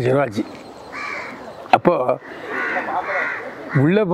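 Crow cawing: several harsh, raspy calls, one about a second in and a few more in the second half. A single sharp click sounds midway.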